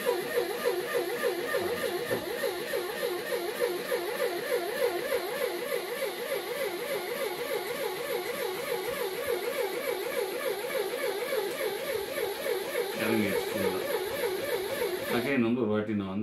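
Small DC motor in a homemade PVC-pipe lift model turning a threaded rod to drive the nut, running with a steady hum whose pitch wavers about three times a second. It cuts off suddenly shortly before the end as the power wires are disconnected.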